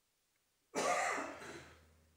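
A man's single throat-clearing cough, starting about three-quarters of a second in and fading away over about a second.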